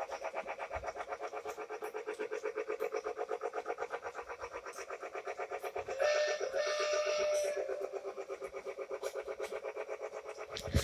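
Remote-control toy train running on its plastic track, making a fast, even pulsing clatter of about eight beats a second. About six seconds in, a held electronic tone with a short break in it sounds over the running noise.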